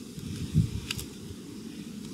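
Garden spade driven into loose bed soil: one dull thud about half a second in, then two short clicks just before the one-second mark.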